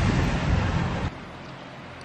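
Wind noise buffeting a handheld camera's microphone, loud and uneven for about the first second, then cut off abruptly, leaving a fainter steady outdoor background hiss.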